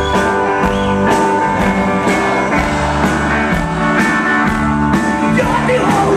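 Live rock band playing an instrumental passage: accordion and electric guitar holding sustained chords over a steady drum beat.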